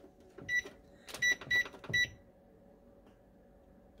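Electric range's oven control keypad beeping as the timer buttons are pressed. There is one short high beep, then three more in quick succession.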